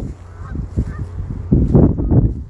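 Geese honking, a few faint calls in the first second. A louder low rumble follows near the end.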